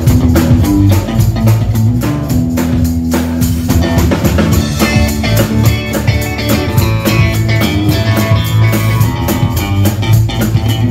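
Live band playing, with a drum kit keeping a steady beat under bass and electric guitar.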